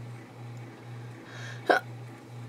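Steady low hum in the room, with one short breathy "huh" from a woman near the end.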